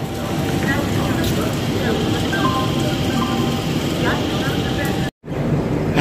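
Railway platform ambience: a steady mix of rumble and noise with faint voices around. The sound drops out briefly near the end.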